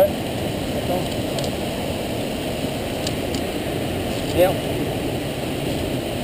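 A steady rushing noise with a few faint clicks, briefly broken by short spoken words.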